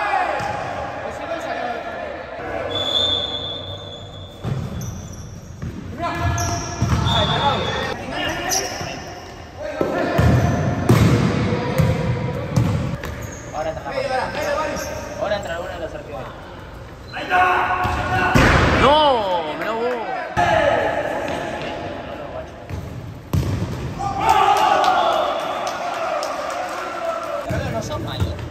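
Futsal ball being kicked and bouncing on a hard indoor court, sharp knocks that echo in a large gym, with players' voices shouting over the play and a few short high squeaks.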